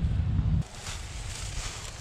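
Wind rumbling on the microphone, which cuts off abruptly about half a second in. What follows is faint, steady outdoor hiss.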